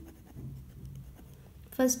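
Ballpoint pen writing numerals on paper: faint, irregular scratching strokes.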